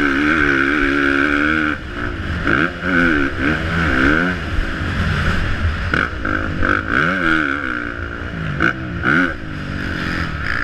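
Motocross bike engine revving up and down again and again as the rider accelerates out of corners and over jumps, heard close from a helmet-mounted camera.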